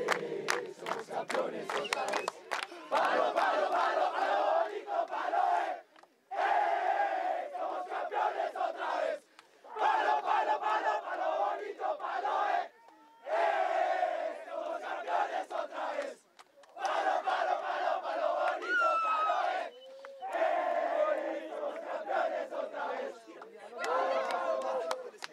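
A group of ultimate frisbee players chanting and shouting together in a victory huddle. They go in about six loud phrases of roughly three seconds each, with brief pauses between.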